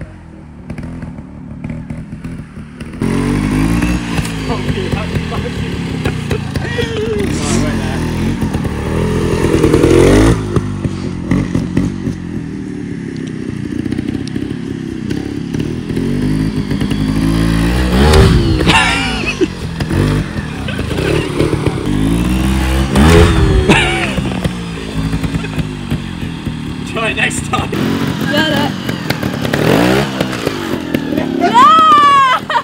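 A trials motorcycle revving up and down in short blips as it climbs over logs, with a few loud knocks about 10, 18 and 23 seconds in.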